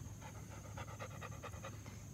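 Faint, quick, rhythmic panting, about five breaths a second.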